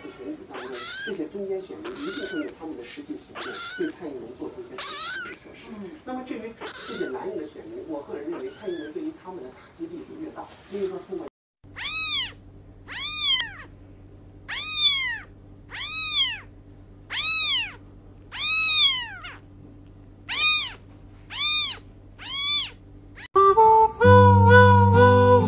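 Kittens meowing in a series of thin, high-pitched mews about once a second. About halfway through the calls become louder and clearer, about ten evenly spaced rising-and-falling mews over a steady low hum. Music starts just at the end.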